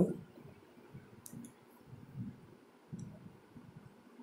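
Faint computer-mouse clicks, one about a second in and another near three seconds, over soft low room noise.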